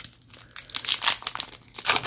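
Plastic wrapper of a trading card pack crinkling as it is handled and pulled open, a run of irregular crackles that grows busier from about half a second in.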